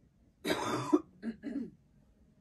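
A woman coughs once about half a second in, followed by two short throat-clearing sounds.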